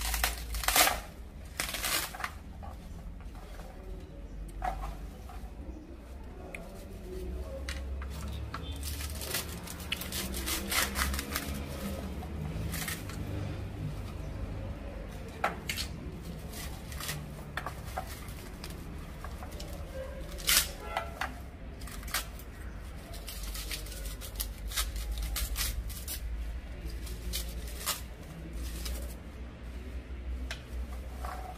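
Dry baobab fruit pulp and fibres crackling and tearing as hands pull apart the split pod, a string of irregular short clicks and rustles over a low background rumble.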